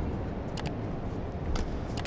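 Badminton rally: a few sharp racket strikes on the shuttlecock, roughly half a second to a second apart, over a low arena crowd hum.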